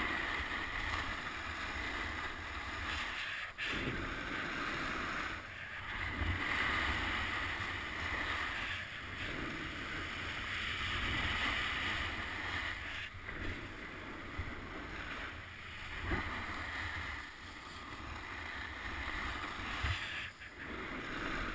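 Edges carving across groomed snow, a hiss that swells and fades with each turn, over wind rumbling on the microphone.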